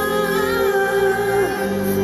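Live pop song over a festival PA: a woman singing a held, wavering melody into a handheld microphone over sustained low bass notes that change about three-quarters of the way through.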